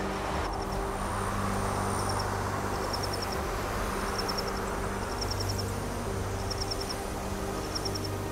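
Steady rush of a fast-flowing, flooded river over a concrete weir, with a low steady hum underneath. Short runs of high chirps come every second or so.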